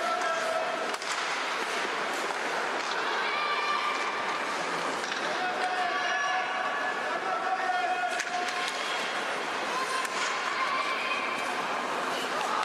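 Live rinkside sound of an ice hockey game: players calling out in long drawn shouts over the steady scrape of skates on the ice, with a couple of stick or puck knocks.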